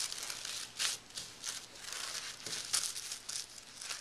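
Tissue-paper sewing pattern piece being folded by hand: irregular crinkling and rustling.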